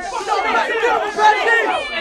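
Several voices talking and shouting over one another at once, like a crowd's chatter, from a recorded hip-hop skit.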